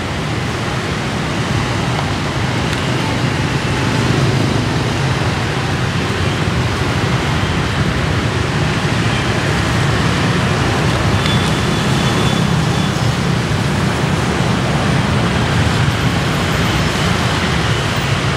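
Steady street traffic noise, mostly motorbikes running past, with a constant low rumble.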